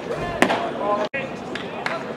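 Ballpark crowd chatter, with one sharp smack about half a second in as the pitched baseball reaches home plate.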